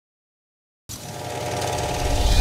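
Silence for nearly a second, then a rattling, machine-like sound effect fades in and grows steadily louder.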